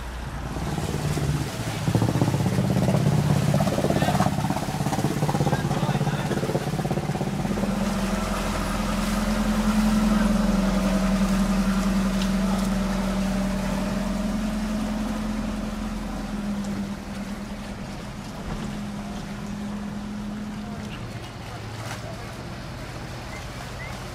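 Inboard engines of small motor cruisers running slowly as they pass close by: a steady low hum that swells in over the first couple of seconds and dies away near the end.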